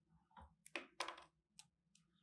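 Quiet clicks and brief rustles of hands working a fly at the tying vise, winding hackle feathers around the hook: about five in two seconds, the loudest about halfway.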